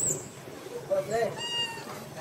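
A young macaque's cry: a short wavering call about a second in, then a higher, drawn-out call that falls slightly in pitch and breaks off just before the end.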